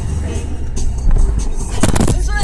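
Pop song with vocals playing on the car stereo inside the cabin, over the low rumble of the moving car, with a couple of sharp knocks near the end.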